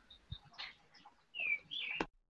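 A bird chirping faintly: two short, high chirps in the second half, after a few faint ticks.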